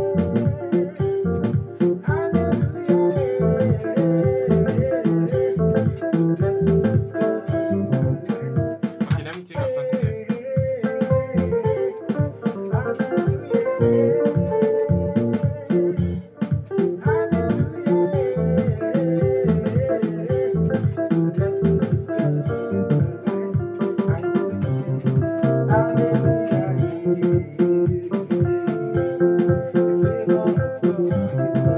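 Makossa groove played on an electronic keyboard: a busy, guitar-like picking pattern over a steady pulsing bass line, with a short break about nine seconds in.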